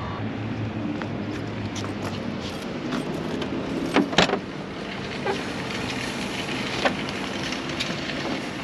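Steady low background hum with a few sharp metallic clicks and knocks, the clearest pair about four seconds in: the latch and sliding side door of a 1978 VW Westfalia bus being opened.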